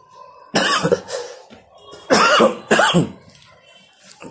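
A man coughing twice, in two short bursts, the first about half a second in and the second about two seconds in.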